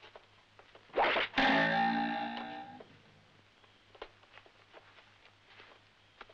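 A short soundtrack music sting: a sudden distorted electric-guitar chord about a second and a half in, dying away over about a second and a half, just after a brief noisy burst.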